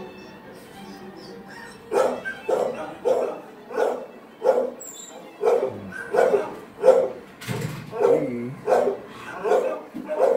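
Dog barking over and over, about two barks a second, starting about two seconds in.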